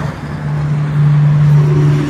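Highway traffic: a passing vehicle's low engine drone grows louder about a second in, over a steady hiss of road noise.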